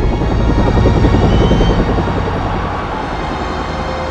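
Helicopter rotor chop as it passes low overhead, loudest about a second in and then fading, over a music score.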